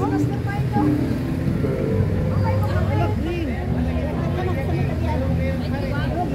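Crowd chatter: several people talking over one another at once, at a steady level throughout.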